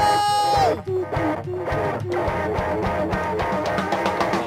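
Live rock band playing: an electric guitar holds one long note at the start, then plays a run of quick notes over drums.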